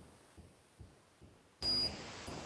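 Near silence on the video call's audio, then near the end a short burst of hiss with a thin high beep-like tone.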